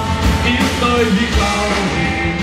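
Live rock band playing loud amplified music.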